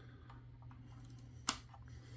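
One sharp click about one and a half seconds in, with a few fainter ticks around it: the small red 115/230 V input-voltage slide switch on a Mean Well LRS-350-12 power supply being flipped with a screwdriver, over a low steady hum.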